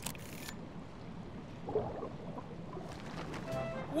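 A cartoon camera shutter sound effect, a short click-and-snap in the first half-second, followed by soft background music.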